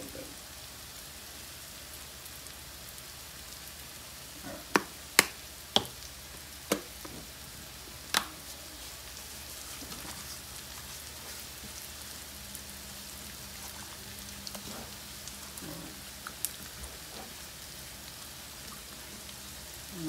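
Steady faint sizzle of vegetables frying in a pan. A handful of sharp clicks or taps come between about five and eight seconds in.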